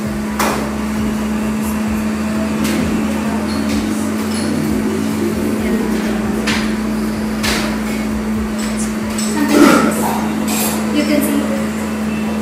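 A steady low hum runs throughout, broken by a few sharp knocks and clinks of steel kitchenware on a counter. A few words are spoken near the end.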